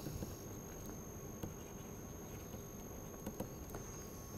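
Low room hiss with a steady, thin high-pitched electronic whine, and a few faint clicks of a stylus on a pen tablet as words are handwritten, a couple of them near the end.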